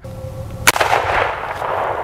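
A single shot from a Marlin Dark Series .45-70 lever-action rifle about two-thirds of a second in, followed by a long rolling echo that fades out.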